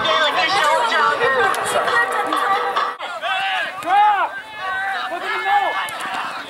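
A song with singing plays and cuts off abruptly about halfway through. Then come voices calling and shouting across an outdoor soccer field during play, with crowd noise behind them.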